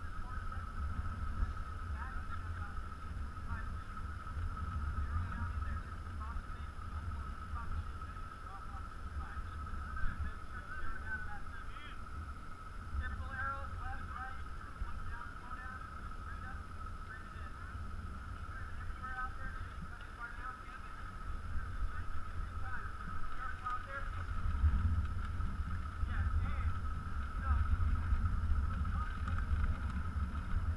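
Wind buffeting a helmet-mounted camera's microphone as a low rumble that grows stronger in the last few seconds, with a steady, wavering high-pitched hum and faint distant voices.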